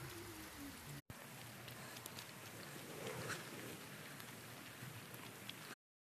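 Faint, steady rain falling on a puddled, muddy dirt driveway. It drops out for a split second about a second in and cuts off abruptly near the end.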